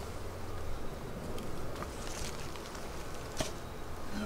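Honeybees humming faintly and steadily over an open, freshly smoked hive, with a few faint clicks.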